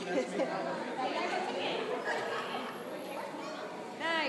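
Indistinct chatter of many adults and small children in a large indoor hall, with no single voice standing out.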